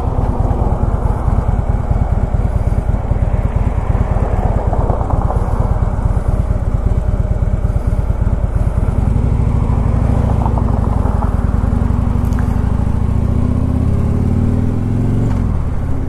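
Harley-Davidson Freewheeler trike's air-cooled Twin Cam 103 V-twin, first running at low revs with a lumpy, pulsing beat as it pulls away from a stop, then rising steadily in pitch as it accelerates. The pitch drops near the end.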